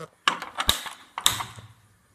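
Gas stove burner knob turned and its igniter clicking, three sharp clicks about half a second apart, as the burner is lit.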